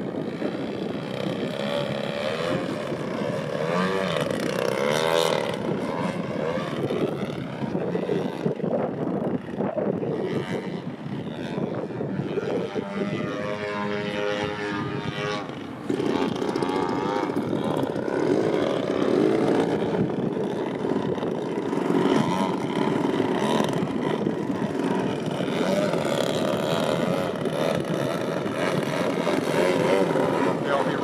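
Engine and propeller of an Extra 300 LX radio-controlled aerobatic plane running continuously, the pitch rising and falling as the throttle changes through the manoeuvres. It gets louder about two-thirds of the way through.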